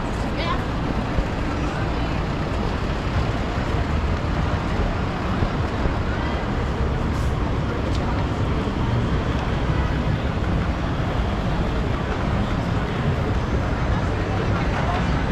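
Busy city street ambience: a steady wash of traffic noise with many people talking in the crowd.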